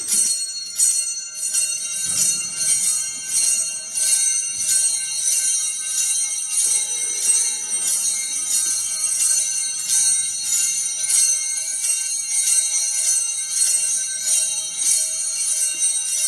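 A cluster of small altar bells shaken over and over in an even rhythm of about two shakes a second, a bright jingling ring that runs without a break; the bells are rung in honour of the Blessed Sacrament being held up in a monstrance.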